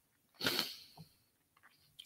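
A short breath noise from a man close to the microphone: one quick noisy puff about half a second in, then quiet.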